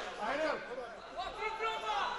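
Indistinct voices talking, fainter than the commentary around them.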